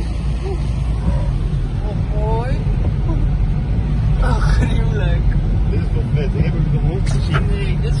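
Steady low rumble of a car's road and engine noise heard from inside the cabin while driving, with faint voices now and then.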